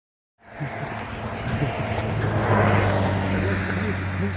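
Grass and leafy brush rustling and brushing past as someone pushes through thick vegetation, over a steady low hum. The sound cuts in suddenly about half a second in.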